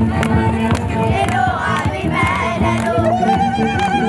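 Singing over a steady percussive beat, with one voice holding a long, wavering note from about three seconds in.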